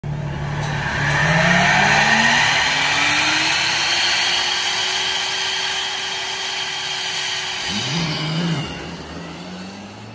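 The McMurtry Spéirling's electric downforce fans spool up, a whine that climbs steadily in pitch over several seconds and then holds loud. Near the end a petrol engine, the LaFerrari's V12, revs up and down briefly as the cars launch.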